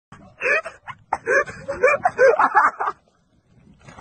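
A person's voice laughing and calling out in short high-pitched bursts, which break off about three seconds in.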